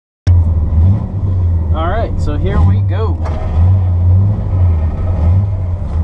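A 1975 Corvette's V8 engine running cold, heard from inside the cabin. Its low rumble swells and drops every second or so as the throttle is pumped to keep it from stalling on old, stale gasoline.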